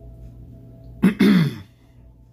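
A man clearing his throat once, about a second in: a short, rough burst that falls in pitch.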